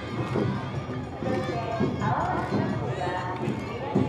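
Awa Odori festival music: a steady beat of drums runs under shouted voices. A higher line that bends up and down comes in about halfway.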